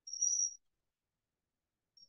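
A brief, thin, high whistle lasting about half a second at the start.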